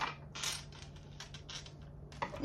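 Tarot cards being shuffled and handled by hand: a few soft, scattered papery riffles and clicks over a low steady hum.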